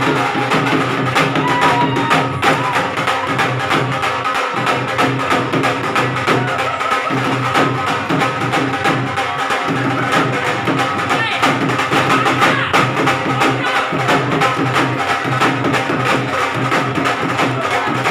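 Punjabi dhol drums played with sticks by two drummers: fast, driving, continuous rhythm.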